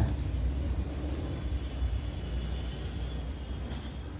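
Steady low background rumble with a faint hiss over it, with no distinct events.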